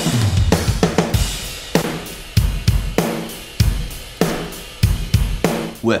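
A rock drum kit recording playing back: kick drum, snare and cymbals in a steady beat of sharp, punchy hits.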